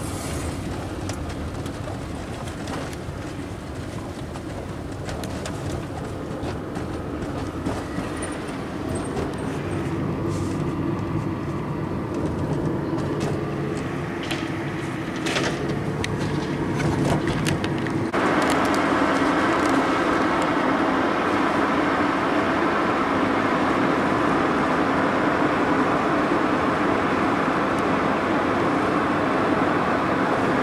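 Cabin noise inside a moving car: a steady rumble of tyres and engine with a few light clicks and knocks. It jumps abruptly louder about two-thirds of the way through and stays there.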